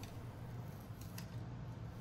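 Paper protective wrap being peeled off a new smartphone's screen: a faint rustle with a couple of soft crackles about a second in.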